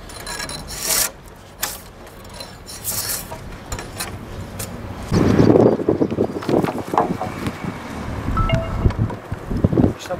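A hand blade scrapes bark off a poplar log in several separate strokes. From about halfway there is louder knocking and rubbing of wood as a peeled pole is handled.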